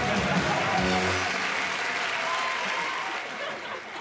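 Studio audience applauding at the close of a game show, with a few notes of music in the first second; the applause fades away near the end.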